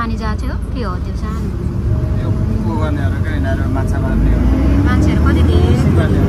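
Low rumble of a moving bus's engine and road noise heard from inside the cabin, growing louder about four seconds in.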